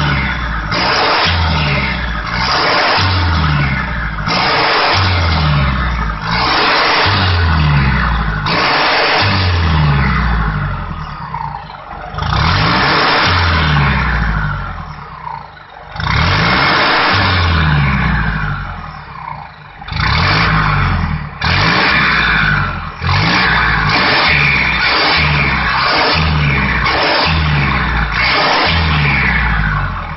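Ten-wheel truck's diesel engine revved in short, repeated throttle blips through a custom-built loud exhaust, each blip falling in pitch as the revs drop. The blips come about once a second, with a few brief pauses around the middle.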